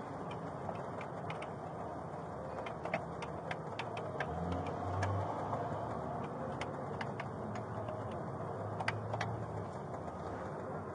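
Steady low background rumble with scattered, irregular light clicks. A low hum rises twice, about halfway through and again near the end.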